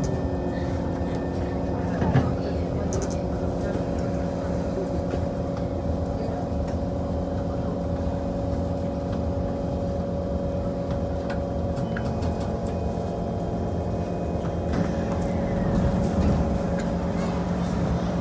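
SMRT C151 train standing at a station platform, its onboard equipment giving a steady, even hum of several tones, with a knock about two seconds in.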